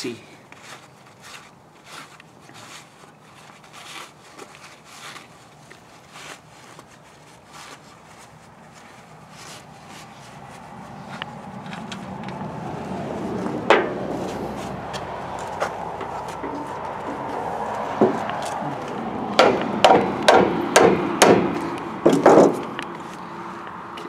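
Gloved hands working at a greasy drum-brake hub with a shop towel: faint rubbing and small clicks, then a swell of background noise and a quick run of about eight sharp knocks in the last few seconds.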